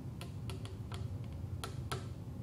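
Computer keyboard keys clicking: about eight sharp, unevenly spaced taps over a faint steady low hum.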